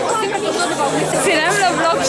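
Speech only: several people chattering over one another, one voice saying "yes, yes" near the end.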